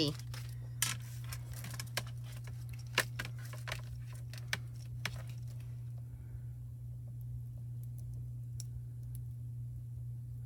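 Light clicks and crinkles of a plastic stencil and a sheet of craft foil being handled and laid down on a metal mat, several sharp ticks in the first half, then only faint sounds over a steady low hum.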